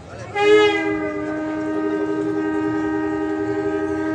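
Conch shell blown in one long, steady blast that starts about half a second in and lasts about four seconds, over a steady drone tone.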